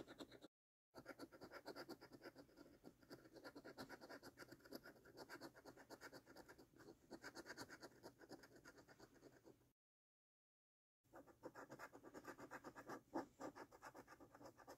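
Coin scratching the scratch-off coating from a scratch card in quick back-and-forth strokes, several a second. The scratching stops twice: briefly under a second in, and for about a second around ten seconds in.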